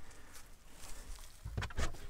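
Cargo floor board of a Hyundai Tucson being lifted by hand: a faint rustle, then two soft knocks as the panel comes up.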